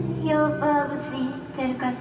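A woman's voice delivering an expressive, drawn-out vocal line over low held synthesizer notes.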